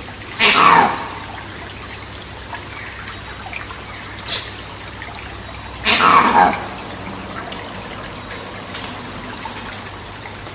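Monkey screaming: two loud calls, each falling in pitch over about half a second, roughly five seconds apart, with a brief sharp call between them. Underneath runs a steady trickling-water jungle ambience.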